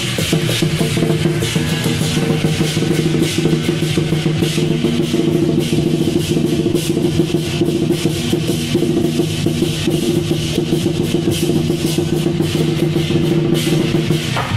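Lion dance percussion: large drums struck with sticks in a fast, dense, continuous rhythm with bright crashing metal strikes over it, and a steady low hum underneath.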